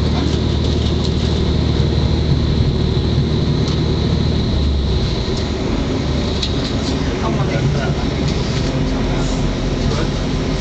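Interior sound of a Class 185 diesel multiple unit under way: a steady diesel engine hum and running noise from the wheels on the rails, with a few sharp clicks over the track. The low engine note changes about halfway through.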